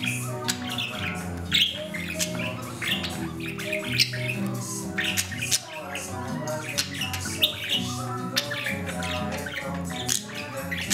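Blue budgerigar chirping and squawking in many short calls over background music.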